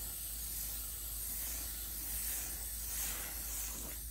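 Garden-hose spray nozzle running a gentle stream of water onto a rooftop RV air conditioner's coil fins, a steady hiss. The water is rinsing the soaked coil cleaner off the coils.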